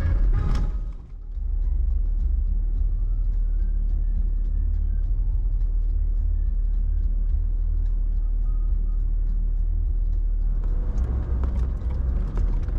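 Steady low rumble of an off-road vehicle driving slowly over a dirt trail, with faint scattered ticks, after music fades out about a second in.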